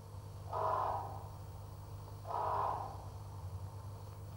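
Two calls, each about half a second long and roughly two seconds apart, over a steady low hum.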